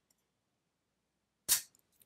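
Sarsilmaz Kilinc 2000 Mega, an all-steel CZ-75 clone 9mm pistol, dry-fired in single action: near silence while the trigger is taken up, then one sharp click of the hammer falling as the trigger breaks, about one and a half seconds in.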